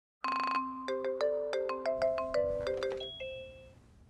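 A short melody of struck, bell-like notes, about three or four a second over a held low tone, dying away near the end.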